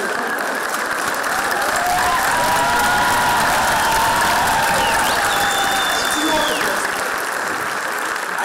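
Theatre audience applauding steadily, with a few voices calling out over the clapping around the middle.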